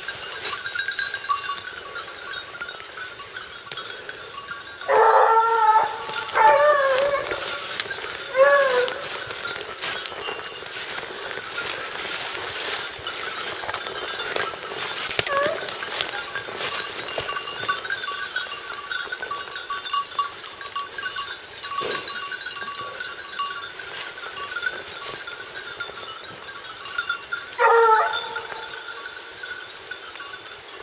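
Porcelaine hounds baying on a hare's trail: a cluster of loud bays about five to nine seconds in and one more near the end. A faint steady ringing runs underneath.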